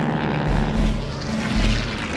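Piston-engined propeller aircraft flying past, its engines droning steadily, with a deep throb about once a second underneath.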